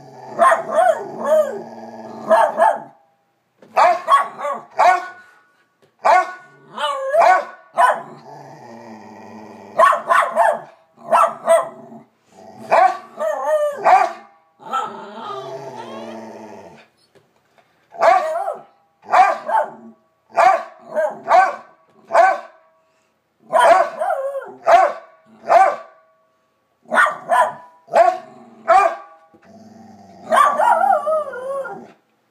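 Two miniature schnauzers barking in rapid runs of short, high barks with brief pauses between runs, plus a couple of longer drawn-out vocal sounds in between.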